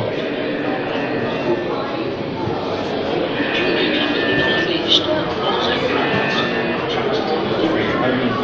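Indistinct chatter of many visitors' voices in a large indoor hall, with music faintly underneath and a single sharp click just before five seconds in.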